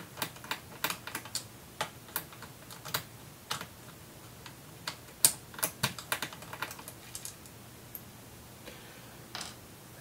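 Irregular sharp plastic clicks and snaps of a Sony VAIO laptop's plastic bottom casing being prised apart by hand along its seam, its clips letting go. The clicks come in quick clusters, thinning out in the second half.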